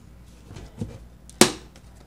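Hands kneading bread dough on a floured countertop: faint handling and pressing, with one sharp knock about one and a half seconds in as the dough is worked.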